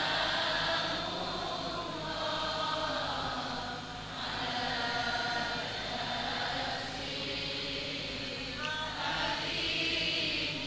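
A group of voices chanting Arabic salawat, devotional praise of the Prophet, together in a slow, wavering unison.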